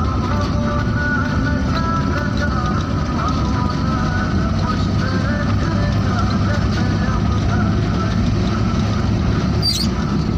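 Steady low road rumble of a car driving, with music playing over it.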